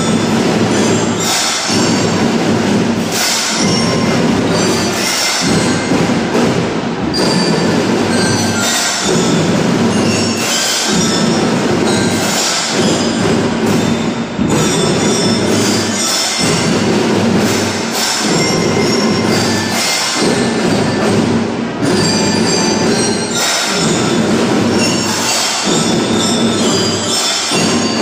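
Children's drum band playing a steady march rhythm on drums and mallet-bar instruments, with bright ringing notes over the drumming and a pattern that repeats about every two seconds.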